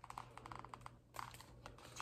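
Faint, quick clicks and taps of a hardcover picture book being handled, fingers and cover shifting as the open book is moved about.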